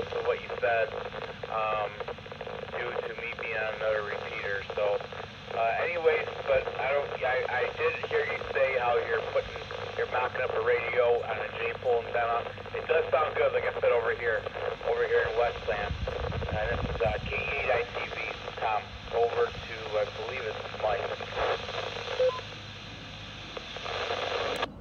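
Another amateur radio operator's voice heard through a TYT TH-8600 transceiver's speaker, coming in over a repeater as thin, band-limited FM radio audio. The talk stops about two seconds before the end, leaving a low steady hiss.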